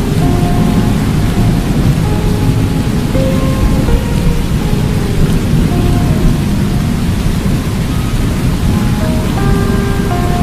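Storm sound effect of steady rain and low rumbling thunder laid over a slowed, reverb-heavy song, of which only scattered short melodic notes are heard.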